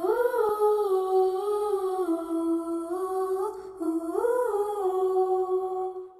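A female singer hums a slow melody with no accompaniment, holding long notes that swell and fall. The vocal is processed as 8D audio, panned around the listener.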